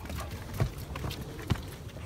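Footsteps climbing wooden steps: a few irregular knocks, the sharpest about one and a half seconds in.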